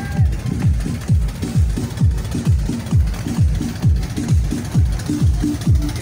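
Electronic music with a deep kick drum that drops in pitch on each hit, about two and a half beats a second.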